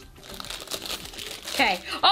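Foil blind-bag wrapper crinkling as it is worked open by hand, in short crackly bursts. A brief voiced exclamation comes near the end.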